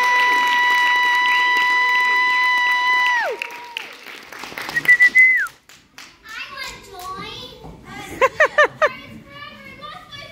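Young cast's voices hold the final sung note of a pirate chorus for about three seconds, ending in a downward slide. A few brief loud shouts follow, then a short burst of laughter in four quick 'ha's amid children's voices.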